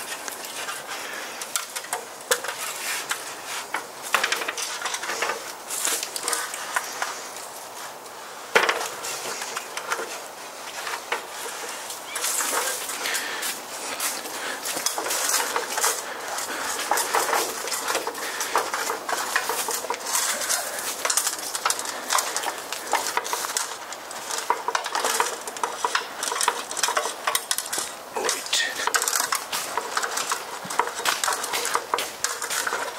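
Ladder rattling and clanking while it is carried, with footsteps crunching on leaves and gravel; one sharp knock about eight seconds in.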